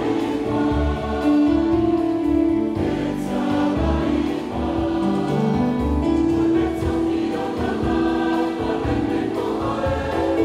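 Church congregation singing a hymn together, many voices holding long notes that change in steps from one to the next.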